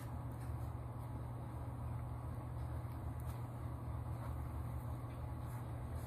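Hamburger buns toasting face down in burger grease in a cast iron skillet on a gas stove: a soft, even sizzle with a few faint crackles, over a steady low hum.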